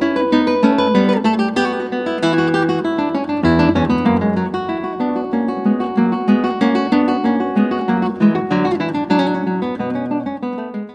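Background music: an acoustic guitar playing quick, continuous plucked and strummed notes.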